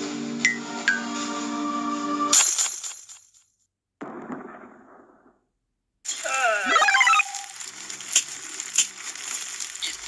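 Cartoon soundtrack: held musical tones with a couple of short falling chirps, cut off about two seconds in by a sudden loud crash that fades into silence. After the silence come squeaky, gliding cartoon-character vocalisations and several sharp click-like sound effects.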